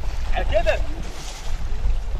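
A person's voice calls out briefly about half a second in, over a steady low rumble of wind on the microphone at the water's edge.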